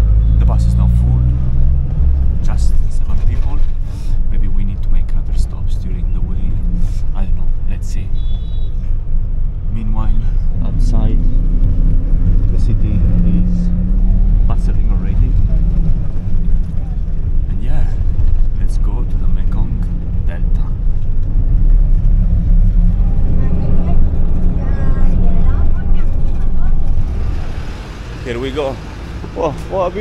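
Steady low rumble of a bus engine and road noise heard inside the moving bus's cabin, with scattered small rattles and knocks. Near the end the rumble drops away and a voice comes in.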